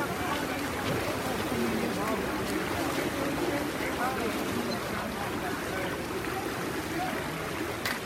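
Splashing and churning water from several swimmers racing, with a steady wash of overlapping voices from people on the poolside, echoing in a large indoor pool hall.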